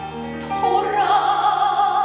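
A woman singing a Korean song into a handheld microphone over instrumental accompaniment. After a brief dip she holds one long note with vibrato, starting about half a second in.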